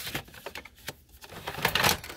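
A sheet of cardstock being handled and loaded into a Canon inkjet printer: a few light clicks, then a short rustling slide of paper near the end.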